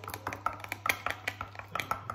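Wooden chopsticks whisking tempura batter in a glass bowl, clicking rapidly and irregularly against the glass, several taps a second.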